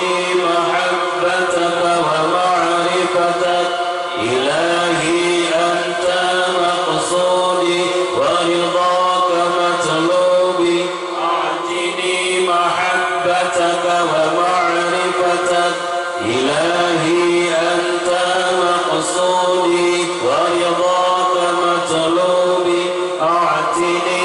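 A congregation of men chanting dhikr together, led by one voice on a microphone: a steady, sustained group chant with a rising swoop in the voices about every four seconds.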